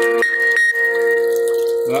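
Mobile phone message alert tone: a steady electronic note held for about two seconds, with two short breaks in the first second.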